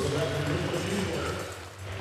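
Hall noise in a large indoor arena with a faint, echoing voice over the public-address system, trailing off near the end.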